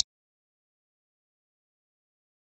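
Digital silence, broken only by the tail of a short click at the very start.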